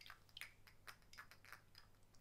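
Faint, irregular clicks and taps of fingernails and fingertips on a square glass perfume bottle and its cap as it is handled.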